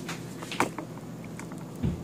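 A few light knocks and scrapes of a kitchen utensil against a plate, with a soft thump near the end, over a faint steady low hum.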